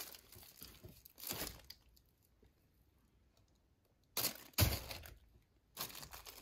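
Plastic sheeting crinkling and rustling as a canvas resting on it is turned by hand. The rustles come in short bursts: one at the start, another about a second in, then a cluster after about four seconds, with a quiet gap between.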